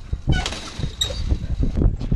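Metal chain-link gate clinking and rattling as it is opened, with two sharp clinks about a third of a second and a second in, over rustling and knocking of the dog-mounted camera.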